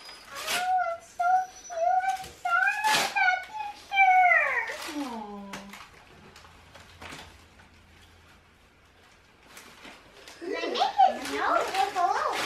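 A high, wavering child's voice held for several seconds, sliding down at the end, with sharp crackles of wrapping paper being torn open. Children's voices talk over one another near the end.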